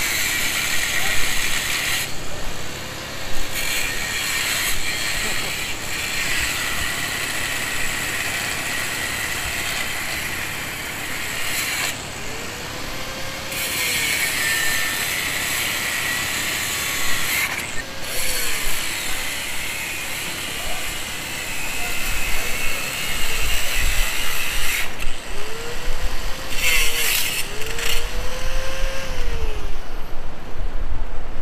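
Corded angle grinder with its disc cutting into the steel frame of a shopping cart: a continuous grinding screech, broken by a few short pauses as the disc comes off the metal and the motor speed dips and rises. It gets louder in the last third.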